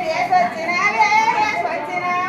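High women's voices singing a cradle song together, holding long, drawn-out notes.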